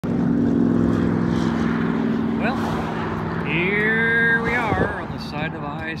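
Vehicle engine drone by the highway, steady for the first three seconds or so, then easing off as a rising tone and voice-like sounds come in.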